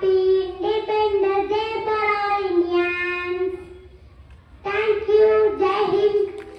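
A young girl singing solo into a microphone, holding long steady notes without accompaniment, with a break for breath about four seconds in before she sings on.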